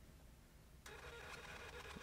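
Near silence, then from about a second in the faint, steady whir of a card terminal's built-in thermal receipt printer starting to feed out a receipt.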